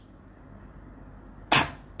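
Faint steady room tone in a pause between sentences, then a sudden short rush of noise about one and a half seconds in that fades within a few tenths of a second.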